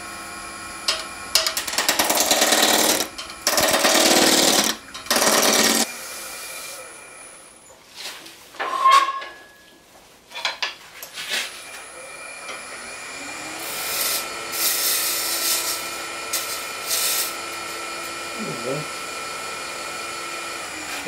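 Wood lathe running a spindle blank at about a thousand rpm while a roughing gouge cuts it round: three loud bursts of cutting noise in the first six seconds, over the steady hum of the lathe motor. The motor sound drops away briefly near the middle, then the lathe runs again with lighter cuts a few seconds later.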